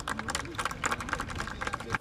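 Scattered, irregular hand claps from a small group of footballers at the pitch side, with faint voices under them.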